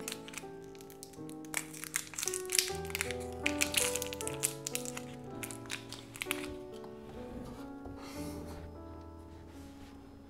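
Background music of steady held notes, with crinkling and clicking of a battery's plastic and paper packaging being handled and torn open, busiest in the first two-thirds.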